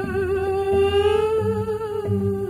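Music: a man's wordless falsetto crooning, holding one long note with a wavering vibrato that rises slightly about a second in, over a soft, steady low backing of bass and guitar.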